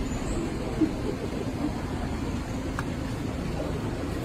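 Steady low background rumble, with a single short knock a little under a second in.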